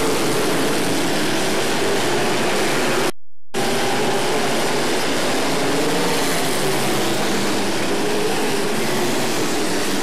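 Several dirt-track modified race cars' engines running together as a pack, a dense steady drone whose pitch wavers as the cars go round. The sound drops out briefly about three seconds in.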